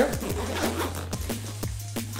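Zipper on a nylon camera backpack's side access panel being drawn open, a quick run of fine ratcheting clicks over the first second and a half. Electronic background music with a steady bass runs underneath.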